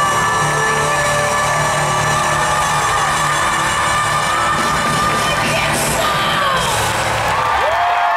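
Live concert music, a band and a female singer's amplified voice holding long closing notes, while an arena crowd cheers and whoops. The held pitch bends down and then back up in the last couple of seconds.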